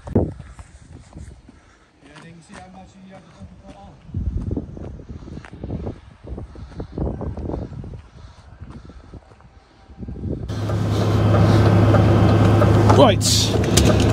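A DAF XF lorry's diesel engine idling steadily, heard from inside the cab, which sets in about ten seconds in. Before that there are only uneven low rumbles.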